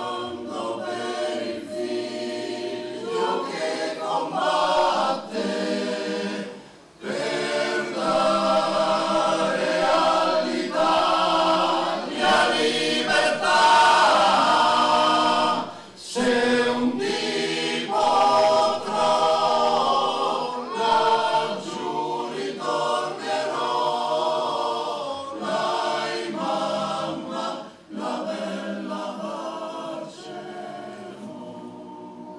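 Male choir singing a cappella in sustained phrases, with short breaks between them about every ten seconds.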